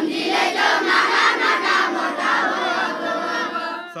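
A large group of children shouting loudly together all at once, many voices overlapping. It starts suddenly and stops just before the end, when the song comes back.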